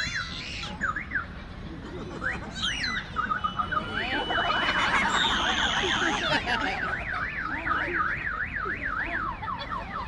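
A shrill, siren-like tone sliding up and down in pitch. It begins as a few separate rising whoops, then from about four seconds in warbles evenly about three times a second, and stops near the end. Crowd chatter runs underneath.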